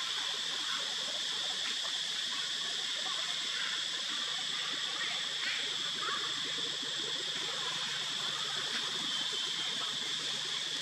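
Steady outdoor tree-canopy ambience: a constant high-pitched insect drone over an even hiss, unchanging throughout.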